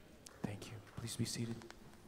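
Soft, near-whispered speech into a handheld microphone, a few short breathy syllables with hissing consonants lasting about a second and a half.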